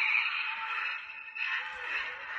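Battery-powered toy excavator playing an electronic sound effect through its small built-in speaker. The sound is thin and tinny, with no low end, and breaks off briefly about one and a half seconds in before starting again.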